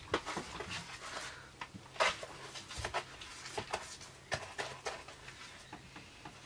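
Paintbrush dabbing and stroking fibreglass resin onto a cardboard frame: an irregular scatter of soft brushy scrapes and taps, over a faint steady low hum.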